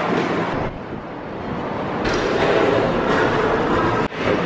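Steady background noise of a busy indoor shopping walkway, an even wash of crowd and room noise with no single sound standing out; it drops and changes about a second in.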